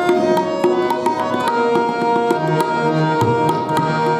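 Harmonium and tabla playing an instrumental passage: held harmonium chords under a quick, steady run of tabla strokes.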